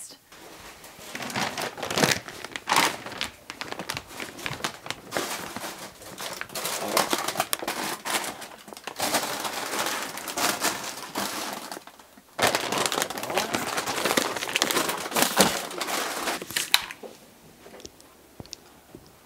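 Plastic grocery packaging crinkling and rustling in irregular bursts as bags and packages are handled and shelved, with a brief pause about twelve seconds in.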